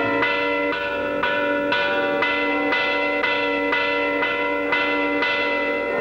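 A deep bell tolling steadily, about two strokes a second, each stroke ringing on into the next: the strokes of midnight ushering in the new year.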